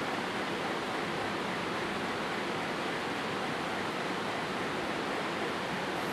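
Steady, even hiss of background noise with no other events: room and recording noise.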